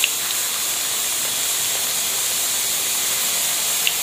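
Batter fritters sizzling in hot oil in an iron kadai: a steady, even hiss of deep frying.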